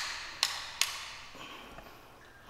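Three sharp taps about half a second apart, each ringing briefly in an empty concrete basement room.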